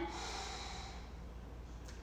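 A slow, full inhale during a yoga breathing cue: a faint breathy hiss that fades away over about the first second.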